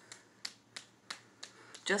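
A fist pounding a bare upper arm: about six short, sharp slaps on skin, evenly spaced at roughly three a second.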